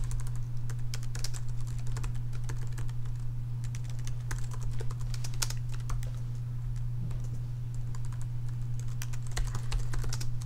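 Computer keyboard typing in irregular runs of keystrokes, with a steady low hum underneath.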